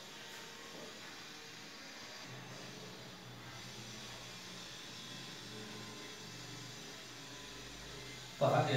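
Faint, steady hum and hiss of room tone, with a low hum that grows a little stronger about two seconds in; no distinct knocks or rubbing strokes.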